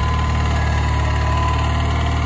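Ariens garden tractor engine running steadily as it pulls a Brinly disc harrow through freshly plowed soil, a constant low drone with a thin steady whine over it.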